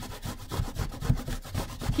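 An unpeeled apple being grated on a stainless steel box grater: fast repeated rasping strokes, several a second, as the fruit is rubbed up and down the blades.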